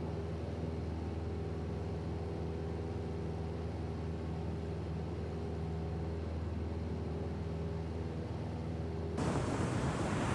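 A steady low drone made of several held tones, unchanging in pitch and level. About nine seconds in, a broad rushing noise joins it.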